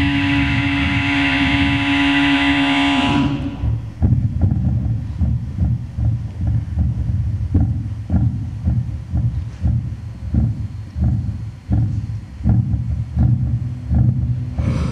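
A held throat-singing drone with a bright, whistling overtone, which stops about three seconds in. It gives way to a heartbeat amplified through a microphone pressed to the chest: low, fast thumps, about two a second.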